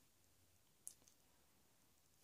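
Near silence: room tone, with one faint sharp click a little under a second in.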